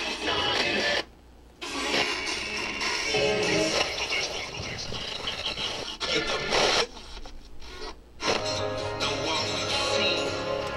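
Music coming from the Sharp GF-9494 boombox's radio through its speakers, cut by two sudden quieter gaps, about a second in and again around the seven-second mark, with the sound changing abruptly at each, as the radio is tuned across stations.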